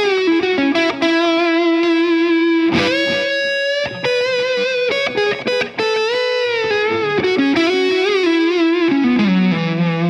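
Sterling by Music Man Luke electric guitar through a Diezel VH Micro amp head with the gain turned down, giving a lightly overdriven tone. It plays a single-note lead line: long held notes with vibrato and upward string bends, then it slides down to a sustained low note near the end.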